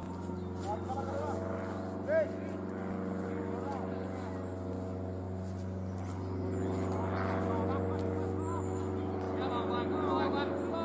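An engine running steadily: a level, droning hum that begins as the sound opens and grows slightly louder in the second half. A few brief calls sound over it.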